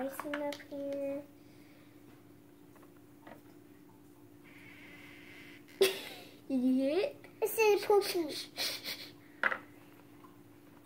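A young girl's voice making short sounds with sliding pitch, once at the start and in a quick string from about six seconds in.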